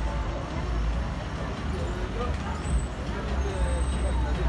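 Cars passing slowly close by on a city street, a steady low engine and tyre rumble, with faint chatter from a crowd behind.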